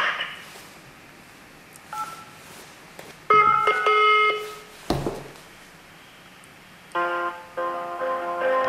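Telephone keypad tone pressed once about two seconds in, then a longer beep of several pitches and a click as the hotline call is put through. About seven seconds in, telephone hold music with plucked guitar starts up, sad-sounding.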